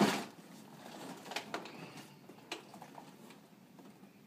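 A heavy cardboard box being handled and laid down on a shelf: a short, loud thud and rustle at the start, then a few light taps and knocks as it settles.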